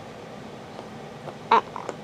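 Quiet, steady room hiss with no distinct sound events, then a single spoken "I" near the end.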